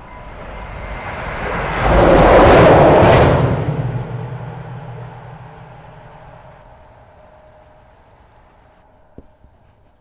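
A train going by: a rumble and rush that swells to a peak about two to three seconds in, then fades away slowly over several seconds.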